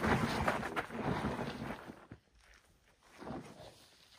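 Scuffing and scraping on sandy dirt for about two seconds: a bouldering crash pad being slid along the ground, with footsteps close by. It then goes quieter, with a brief low voice sound a little past three seconds.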